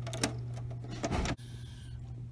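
Small plastic clicks and handling noises as fingers work the disc position sensor cable's connector loose from a circuit board inside a CD player, with a cluster of knocks about a second in, over a steady low hum.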